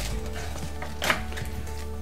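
Cardboard box packaging and a plastic bag being handled, with a short rustling burst about a second in, over soft background music.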